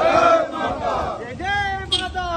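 A crowd of marchers chanting a patriotic slogan in call and response. The group shouts its reply together, then a single voice leads the next line about a second and a half in.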